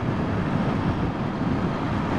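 Motorcycle riding along a paved highway at road speed: a steady rush of wind and road noise, with the engine running underneath.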